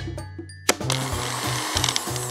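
Toy blender whirring and rattling as its spiral spins the play food, starting with a click about two-thirds of a second in, over background music with a steady bass line.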